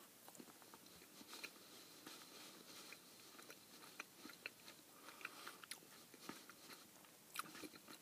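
Faint chewing of a bite of soft marzipan sweet, with small scattered mouth clicks.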